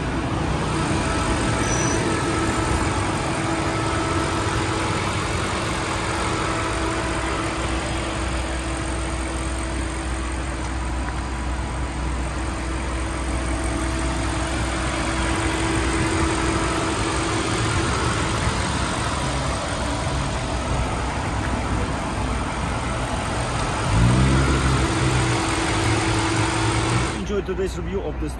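The BMW 750i's 4.4-litre twin-turbo V8 running with the hood open: a steady mechanical hum with a held tone. Near the end a louder sound comes in suddenly and rises in pitch for a few seconds.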